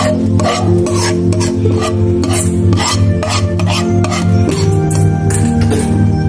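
Background music with a pulsing bass, over a utensil scraping thick sauce out of a metal pan in quick, uneven strokes as it is poured onto the crabs.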